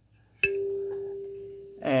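A single kalimba note plucked about half a second in: a clear, pure ringing tone that fades slowly over about a second and a half.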